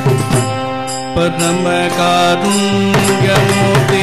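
Live South Indian devotional bhajan music: held melodic notes on harmonium and violin that step to new pitches, over repeated sharp percussion strikes.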